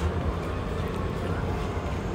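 Steady outdoor background noise: a low rumble with a hiss over it and no distinct event.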